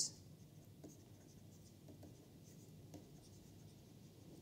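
Faint, scattered scratching and tapping of a stylus writing on a pen tablet, over quiet room tone.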